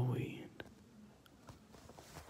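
A man's breathy, whispered voice trailing off in the first half second, followed by quiet with a few faint scattered clicks.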